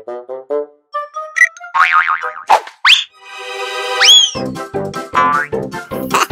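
Playful cartoon background music with comic sound effects: short plucked notes, quick rising pitch slides, and a boing-like glide that swoops up and bends down about four seconds in, followed by a bouncy rhythmic beat with bass.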